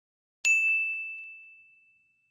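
A single bright bell-like ding, the notification-bell sound effect of a subscribe-button animation. It strikes about half a second in and rings out, fading over about a second and a half.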